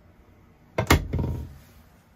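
A camper's cabinet door swung shut, closing with one sharp knock just under a second in and a brief ringing tail.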